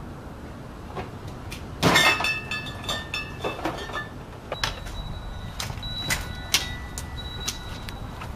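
Refrigerator door pulled open about two seconds in, the glass bottles in its door shelves knocking together and ringing; a string of lighter glass clinks and knocks follows.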